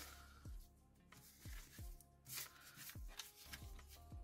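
Faint background music with soft low beats, and a light rustle of paper being handled and folded.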